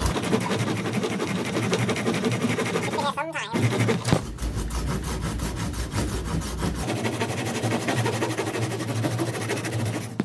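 Folding pruning saw cutting through a round wooden tree stake, steady back-and-forth rasping strokes with a brief break about three seconds in.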